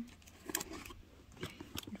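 Quiet handling of a cardboard storage drawer box: a few faint taps and paper rustles, about half a second in and again near the end.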